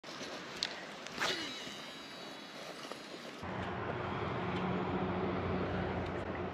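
Baitcasting reel being worked with a jerkbait: a few sharp clicks, then from about halfway a steady low hum as the reel is cranked to retrieve the lure.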